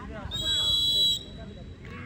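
A referee's whistle: one steady, high-pitched blast of about a second, the usual signal that lets the next serve go.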